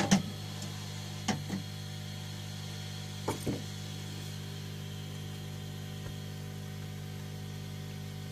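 A steady low electrical hum, with a few light clicks and knocks in pairs: the loudest at the very start, then about a second in, again after three seconds, and one faint one near six seconds.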